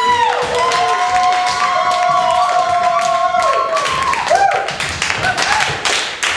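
Voices hold a long sung note, then hand clapping starts about four seconds in and keeps going.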